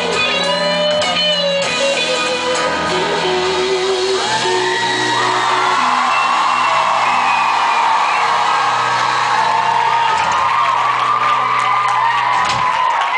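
Live pop-rock band with acoustic guitar playing the closing bars of a song, heard through a concert crowd's recording. About four seconds in, the audience breaks into screaming and whooping over a held final chord.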